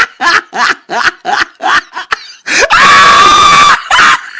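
A person laughing in short rhythmic bursts, about three a second, then one loud, high-pitched scream held for about a second near the end.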